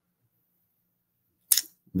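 Near silence in a pause in a man's talk, broken about one and a half seconds in by one short sharp click; his speech resumes at the very end.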